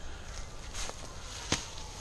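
Footsteps crunching through dry leaf litter, with a single sharp click about one and a half seconds in.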